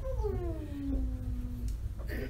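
One long drawn-out vocal sound that slides steadily down in pitch and dies away after about a second and a half, over a low steady room hum.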